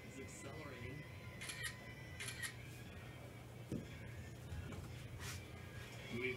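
Faint background voices and music, with a few short soft clicks.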